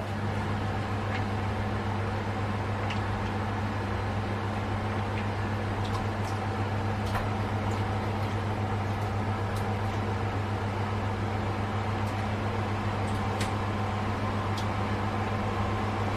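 Steady electrical hum and fan noise from a running kitchen appliance, with a few faint crinkles and ticks as a plastic sachet of paste is squeezed.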